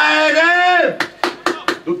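A man's long, loud held shout, followed about a second in by five quick, sharp smacks in close succession. The start of another shout comes right at the end.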